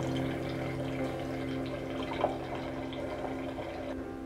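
White wine pouring from a bottle into a large wine glass, a continuous liquid pour as the glass fills. A short sharp click or clink about two seconds in.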